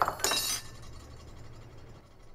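Glass breaking: a short crash with clinking pieces in the first half second, then dying away.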